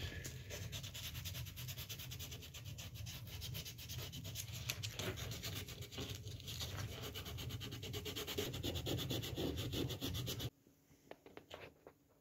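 Hand sanding by fingertip inside a shallow round recess in a wooden chessboard frame: fast, steady back-and-forth rubbing that cuts off suddenly about ten and a half seconds in, followed by a few light taps.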